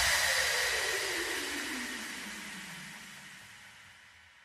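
A hissing wash with a slowly falling tone, fading evenly away to silence: the tail of the background electronic music track being faded out.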